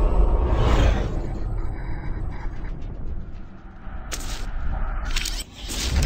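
Sound effects of an animated logo intro: a deep rumble and a whoosh that fade away over the first couple of seconds, then a few short, sharp bursts of noise near the end.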